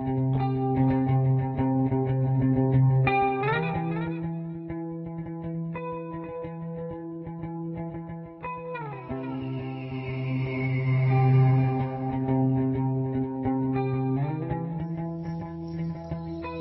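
Instrumental music: a guitar with effects playing slow, held chords that change every five seconds or so.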